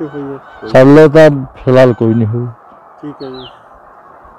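A man speaking in short, loud phrases, the loudest about a second in and again just before two seconds, with quieter words at the start and about three seconds in.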